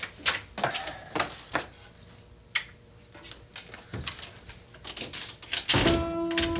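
Scattered light knocks and clicks at irregular intervals, a door being opened and shut and footsteps on a floor. A music sting begins right at the end.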